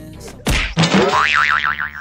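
A cartoon 'boing' sound effect starting suddenly about half a second in, its pitch wobbling rapidly up and down.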